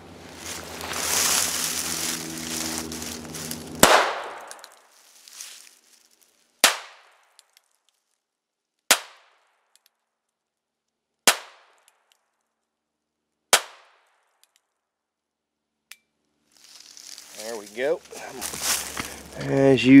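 Five .22 Magnum shot-shell (rat shot) rounds fired from a North American Arms Sidewinder mini-revolver, each a sharp, short shot, about one every two and a half seconds starting about four seconds in. A hissy rustle comes before the first shot.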